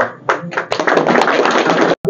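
A group of people clapping, a dense patter of hand claps lasting about a second and a half that cuts off suddenly near the end.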